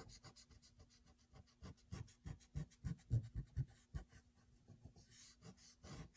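Rubber eraser scrubbed back and forth on drawing paper, rubbing out a pencil line: a soft, fast run of short scratchy strokes, about four or five a second.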